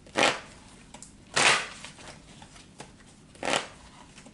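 A deck of tarot cards being shuffled by hand in three short bursts of papery card noise, a second or two apart.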